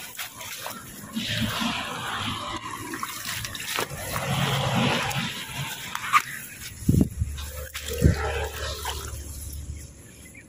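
Wet grass rustling and shallow water splashing as hands and feet search through flooded grass, with a few clicks and two dull thumps in the second half.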